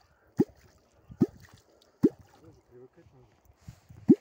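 Catfish kwok (квок) being struck into the water of an ice hole, giving a short low bloop about every 0.8 s, three times in the first half. Faint gurgling bubbles follow the third bloop.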